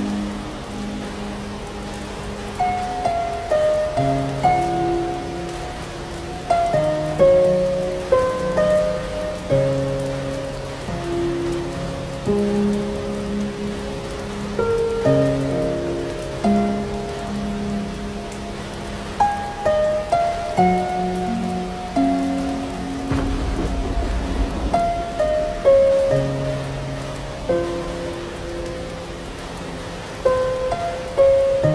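Slow, gentle instrumental music of single notes that strike and fade, laid over steady rain. About two-thirds of the way through, a low rumble of thunder comes in under the music.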